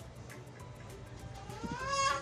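A single meow, rising in pitch, starting about one and a half seconds in and peaking at the end, over quiet background music.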